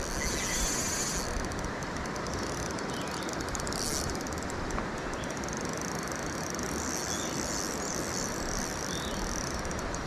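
Spinning reel's drag buzzing in spells as a hooked trout pulls line, over a steady rush of background noise.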